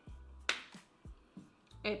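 A sharp finger snap about half a second in, followed by a few fainter clicks.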